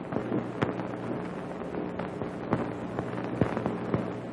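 Irregular, scattered typewriter key clacks over a steady low hum and hiss.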